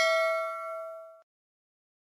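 Notification-bell 'ding' sound effect: a bright bell tone with several clear overtones, ringing out and fading away about a second in.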